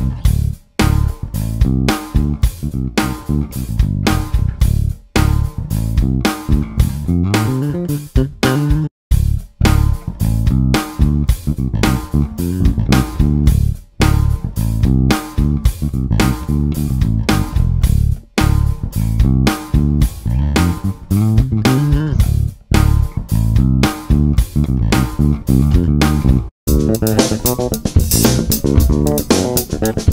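Wyn Basses handmade five-string electric bass played solo, a busy line of separate plucked notes several a second with no other instruments. After a short break near the end, the tone turns much brighter as a second bass takes over.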